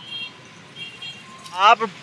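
Faint background of road traffic, then a man starts speaking near the end.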